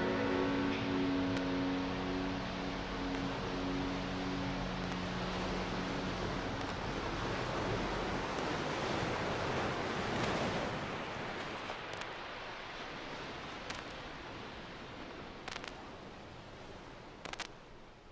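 Rushing noise of ocean surf that swells about ten seconds in and then slowly fades out. The last held notes of the music die away in the first few seconds, and a few faint clicks come near the end.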